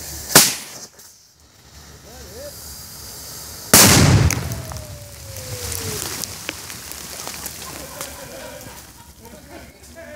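A 4-inch firework mortar shell going off: a short sharp bang about half a second in, then, a little over three seconds later, a much louder blast with a brief rumbling tail.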